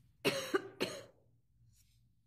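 A person coughing twice in quick succession, the first cough longer than the second.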